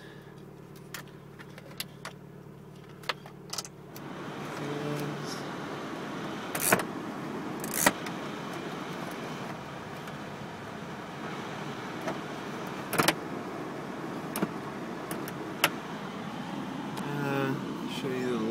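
Cabin of a 1995 Mazda Miata with the engine idling as a steady low hum. About four seconds in the heater/ventilation blower comes on as a steady rushing hiss. Sharp clicks from the dashboard knobs and sliders come throughout, the loudest a few at around seven, eight and thirteen seconds.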